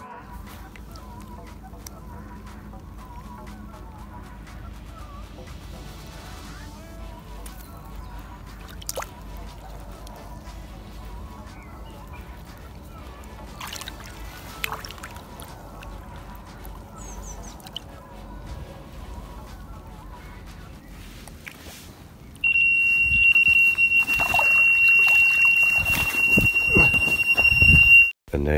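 Water sloshing softly as a carp is eased back into the lake by hand. Then, about 22 seconds in, a carp bite alarm comes on suddenly with one loud, steady high-pitched tone: a screamer, a fish taking line on a run.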